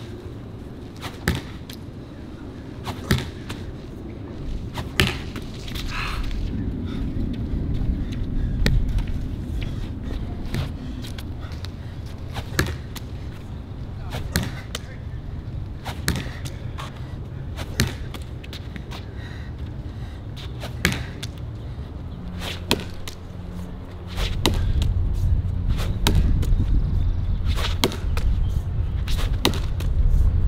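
A lacrosse ball thrown hard against a concrete wall and caught in a lacrosse stick, with sharp knocks every one to two seconds that come faster near the end. A steady low rumble runs underneath and grows louder after about 24 seconds.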